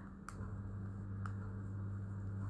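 Two faint clicks of a plastic bottle and drink sachet being handled, about a second apart, over a steady low hum.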